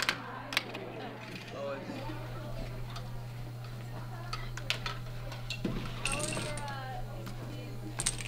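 A marble rolling and clicking through the plastic marble-run tracks of a Rube Goldberg contraption: a scattering of light, sharp ticks and clacks, a few louder ones near the start and a cluster a little past the middle.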